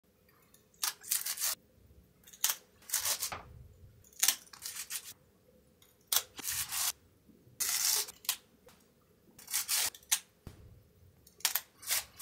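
A series of short, sharp clicks and brief rustling snaps in irregular clusters, roughly one cluster a second.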